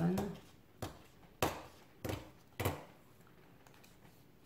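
Patterned paper, dampened along the line with a water brush, torn off against a plastic tear ruler in four short rips about half a second apart.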